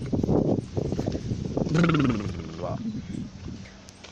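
A person's voice laughing and vocalizing without words. Pulsed sound comes in the first second, then one drawn-out sound falling in pitch about two seconds in, fading away near the end.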